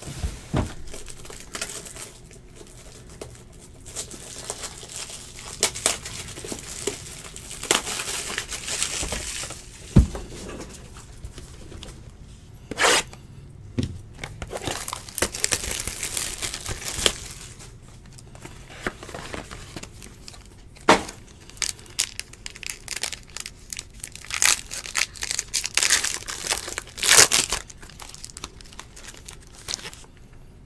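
Hands handling trading cards and their packaging: crinkling and tearing of wrapper and plastic, with scattered sharp taps and clicks and several longer stretches of rustling.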